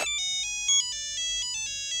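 Mobile phone ringtone playing a bright electronic melody of quick stepping notes, opening with a sharp click.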